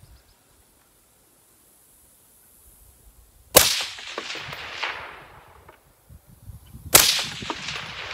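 Two rifle shots about three seconds apart, the first about three and a half seconds in. Each is followed by a long rolling echo that dies away over a second or more.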